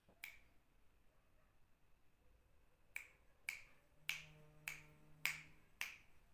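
Finger snaps: one just after the start, then a steady run of about six, roughly two a second, from about three seconds in. A faint low hum sits under the middle of the run.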